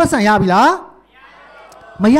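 A man speaking into a handheld microphone, breaking off about halfway, after which only a faint hiss remains.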